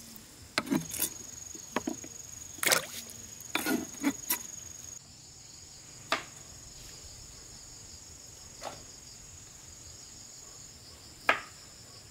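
Sliced figs dropping into a basin of water, about seven quick splashes and plops over the first five seconds, over a steady high insect drone. After that the drone carries on alone, with three sparse knocks.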